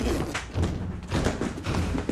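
A run of about four dull, low thumps, roughly half a second apart.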